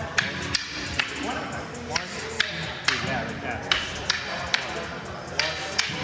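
Kali sticks striking each other in a partner drill: sharp wooden clacks, roughly one or two a second in an uneven rhythm.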